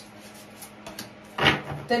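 Oracle cards being drawn from a deck and laid on a wooden table, a soft handling sound. Speech begins about one and a half seconds in.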